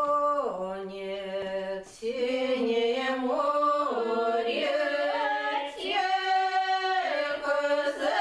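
Women's folk ensemble singing a slow Russian romance a cappella, several voices together on long held notes, with a short break about two seconds in before the next phrase.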